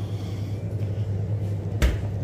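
Steady low hum with one sharp click near the end.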